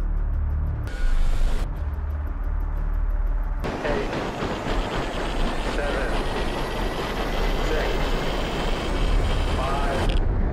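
Cinematic soundtrack sound design: a deep bass drone with a short loud hit about a second in. From about four seconds a dense rushing roar fills the rest, with faint voice-like sounds inside it.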